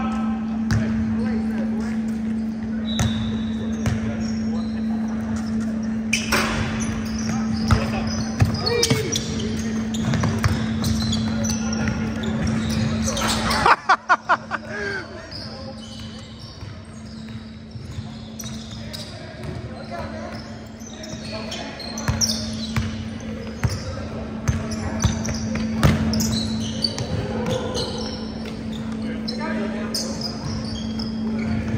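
Basketball game on a hardwood gym floor: a ball bouncing, short high sneaker squeaks and indistinct voices in a large echoing hall, over a steady low hum. About fourteen seconds in comes a quick run of loud clatters, after which everything is quieter.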